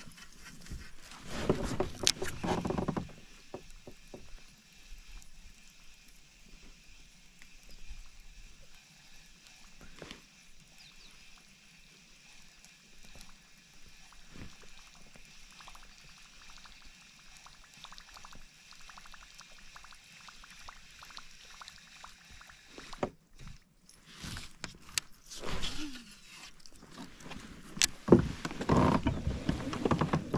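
Handling noises on a fishing kayak as a lure is worked: a burst of rustling and knocks in the first few seconds, then faint rapid ticking from a baitcasting reel being cranked, with a few sharp clicks, and louder knocks and rustles again near the end.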